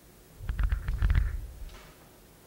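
Close handling noise from the communion table: starting about half a second in, about a second of low rumbling bumps with a quick run of crackles and clicks, as the elements are handled near the microphone.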